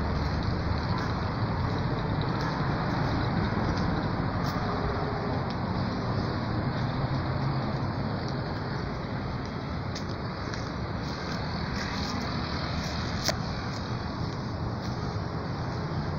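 Steady hum of road traffic passing nearby, a continuous even noise with no distinct individual vehicles standing out.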